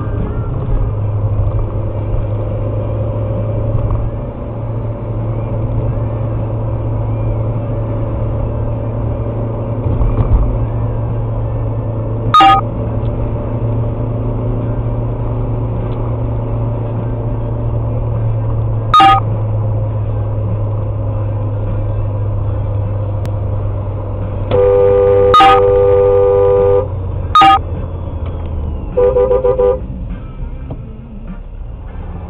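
Car horns honking over steady engine and road noise inside a car. There are two short toots, then a long honk of about two seconds, another short toot, and a final burst near the end.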